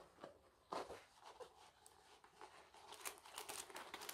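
Faint rustling and crinkling of a rolled diamond-painting canvas and its paper backing being slowly unrolled by hand from a foam roller: a short rustle about a second in and a run of small crackles near the end.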